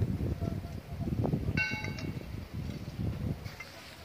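A short metallic bell ding about one and a half seconds in, a cluster of high ringing tones that stops abruptly, over a low background murmur.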